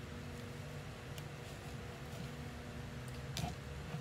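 Steady low hum of an electric fan, with a few faint ticks.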